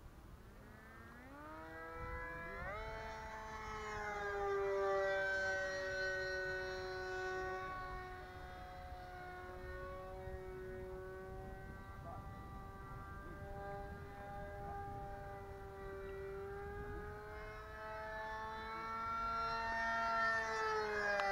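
E-flite Scimitar radio-controlled plane in flight, its electric motor giving a high whine that climbs in pitch about two seconds in as the throttle opens. The whine then holds, rising and falling slowly in pitch and loudness as the plane moves around the sky.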